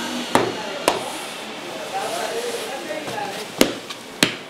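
Bread dough being kneaded by hand and slapped down onto a floured counter: three sharp slaps, one about a third of a second in, another about a second in, and one near the end. The dough is being worked to develop its gluten and is nearly fully kneaded.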